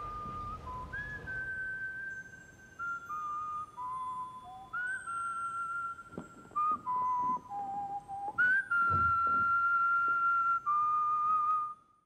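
A person whistling a slow tune, one clear note at a time stepping mostly downward, with a long held note near the end. There is a low thump about nine seconds in. The whistling cuts off suddenly just before the end.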